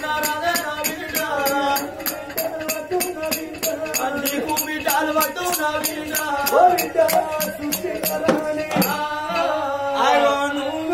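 Telangana Oggu Katha folk music: voices singing a chant-like melody over a steady quick beat of about four strokes a second from a small hand drum and small hand cymbals. The beat stops about a second before the end.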